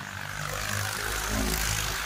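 Diesel farm tractor's engine passing close by, its low drone swelling to a peak about one and a half seconds in and then easing off, over wind and road noise from riding.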